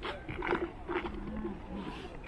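Footsteps crunching on frosty lake ice at a walking pace, about two steps a second, with faint voices in the background.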